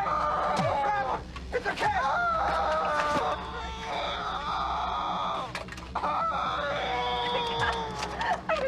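A person screaming in long, high-pitched, wavering cries, one after another.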